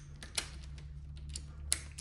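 A large ratchet wrench with a T50 Torx socket clicking in short, irregular clicks as it is handled and set onto a transmission bell housing bolt. A steady low hum sits underneath.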